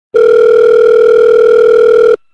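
A loud, steady electronic tone: a single held beep with a buzzy edge from its overtones, starting abruptly just after the beginning.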